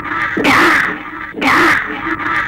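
Harsh cawing calls, repeated about once a second, each lasting about half a second.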